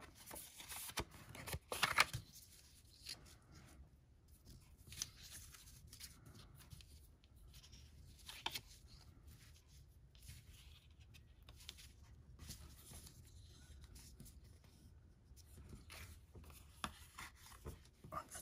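Cardstock and twine being handled as twine is wrapped and tied around a card panel: faint, scattered rustles and light ticks, the loudest a brief rustle about two seconds in.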